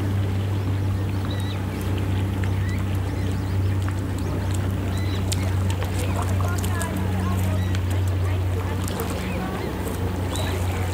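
Steady low drone of a boat engine out on the lake, over small waves lapping on a pebble shore, with short chirping water-bird calls throughout.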